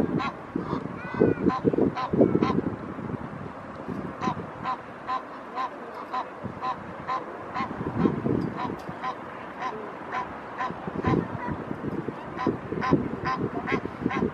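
Egyptian geese calling: a steady run of short, repeated calls, a little over two a second, with bursts of low rumbling noise at the start and twice more later on.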